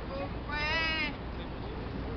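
A single drawn-out call from a person's voice, about half a second long and wavering in pitch, over steady city street noise.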